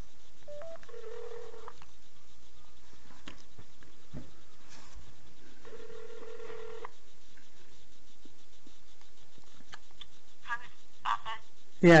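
Telephone ringback tone heard through a phone's speakerphone as an outgoing call rings: a couple of short beeps, then two rings about a second long and about five seconds apart. A voice answers near the end.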